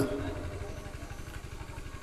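A low, steady, rapidly pulsing hum of an idling engine in the background.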